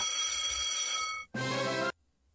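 Online slot machine game's electronic music with steady held tones. It drops out briefly about a second in, comes back for about half a second, then cuts off abruptly.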